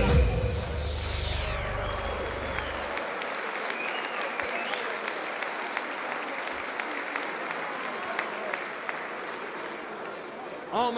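Audience applauding after a song. The song's last low notes and a falling swoosh die away in the first three seconds, and the applause then slowly fades.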